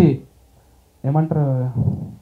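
A man speaking into a handheld microphone. He stops for most of a second near the start, then goes on.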